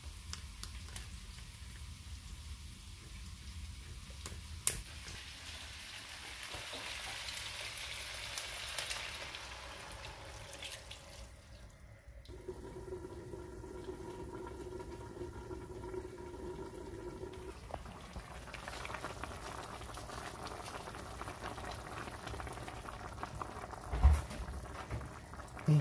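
A meat, potato and carrot stew sizzling and bubbling in a frying pan, with broth poured in from a plastic container for about five seconds near the middle. A few sharp clicks in the first second, from a kitchen knife working open a tin can.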